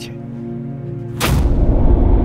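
Trailer score of held, sustained tones, then about a second in a sudden loud cinematic impact hit that leaves a deep, loud low rumble.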